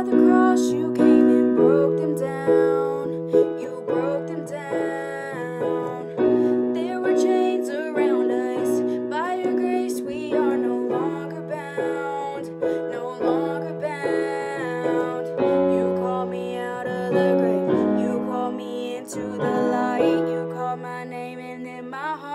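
A woman singing a contemporary worship song over piano accompaniment, the piano holding chords that change every second or two under the sung melody.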